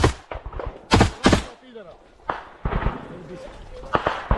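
Rifle shots at close range: a sharp crack at the start, a loud pair of shots about a second in a third of a second apart, then two weaker cracks later on.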